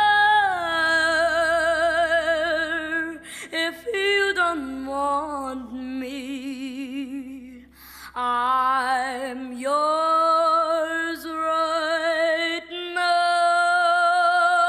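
Female vocalist singing long held notes with a wide vibrato, sliding down between pitches, with little accompaniment. The voice breaks off briefly about eight seconds in, then returns low and climbs to higher held notes.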